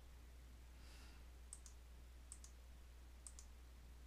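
Near silence with a low hum, broken by a few faint computer mouse clicks: a single click, then two quick double clicks.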